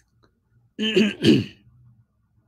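A man clearing his throat, two short vocal bursts about a second in, the second falling in pitch.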